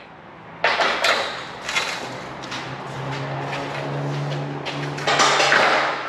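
Large welded steel gate frame being lowered and set onto its ground track: metal scraping and knocking, loudest in the last second, with a steady low drone through the middle.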